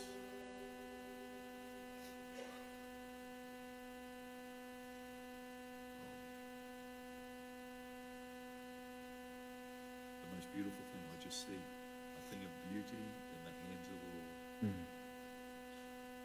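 A faint, steady hum with a stack of even overtones. Faint murmured voices come in between about ten and fifteen seconds in.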